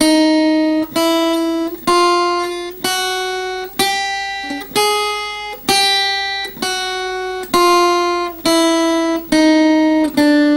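Acoustic guitar playing a chromatic scale on the top two strings, one picked single note about every second, each ringing and fading before the next. The notes climb in semitone steps to a peak about five seconds in, then step back down.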